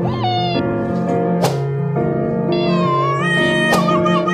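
A cat's crying meows, the banana cat meme sound: a short cry at the start and a longer, wavering one through the second half, over background music. Two sharp clicks sound, one about a second and a half in and one near the end.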